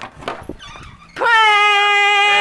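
A few soft knocks and rustles, then a little over a second in a loud, high-pitched wail starts and is held at nearly one pitch, sinking slightly.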